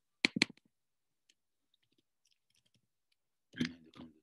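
Computer keyboard in use: two sharp key clicks in quick succession, then a few faint ticks of light typing.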